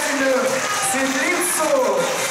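A person speaking; the words are not made out.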